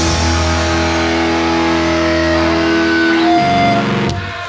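Final chord of a live punk rock song: distorted electric guitar and bass held and ringing out, with the held notes changing about three and a half seconds in.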